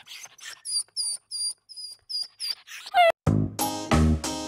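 A run of short, high squeaky chirps, about three a second, then a quick falling whistle about three seconds in, after which background music with a steady beat starts.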